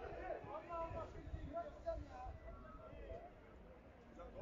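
Distant voices of people shouting and talking across a near-empty football stadium, with a low rumble underneath.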